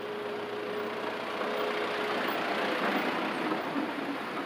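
A Ford pickup truck driving past close by, its engine and tyre noise building to loudest about three seconds in.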